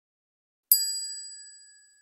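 A single bright, bell-like ding sound effect, struck about two-thirds of a second in and ringing out over about a second.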